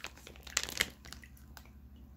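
Clear plastic packaging on a wax melt loaf crinkling as it is handled, with a cluster of crackles just over half a second in, over a faint steady low hum.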